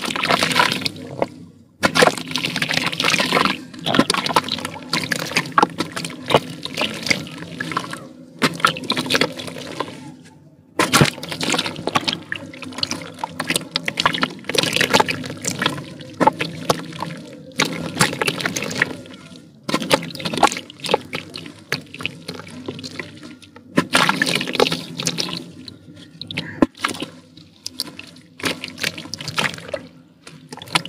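Red dirt being crumbled by hand into a tub of muddy water: crackling crumbs and grit splashing and trickling into the water, in irregular bursts with brief pauses.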